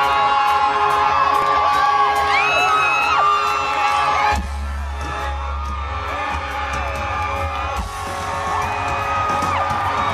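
Live rock band on stage, electric guitar to the fore, with the crowd whooping and yelling. About four seconds in the sound cuts abruptly to a quieter stretch under a heavy low rumble.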